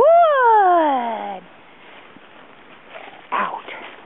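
A dog gives one long, high whine that leaps up in pitch and then slides down over about a second. A shorter, fainter sound follows near the end.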